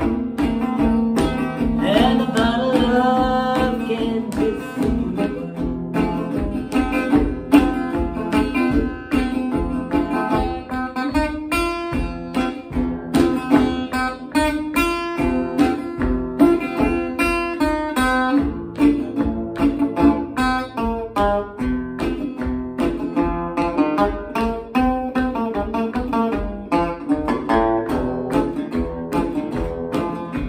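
Metal-bodied resonator guitar played solo in a blues style, picked melody notes over a steady bass beat.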